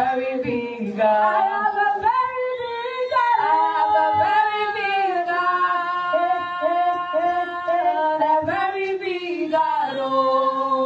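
Unaccompanied worship song sung by a woman into a microphone, with gliding phrases and long held notes through the middle.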